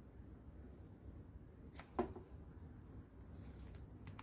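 Electronic pipette aid's small pump running quietly as it draws liquid up a serological pipette, with one sharp plastic click about two seconds in.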